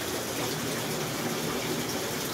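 Steady rush of water circulating through the filters and aeration of rows of aquarium tanks.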